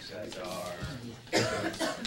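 Indistinct voices murmuring in a lecture hall. A loud cough comes about one and a half seconds in, with a second, shorter one just after it.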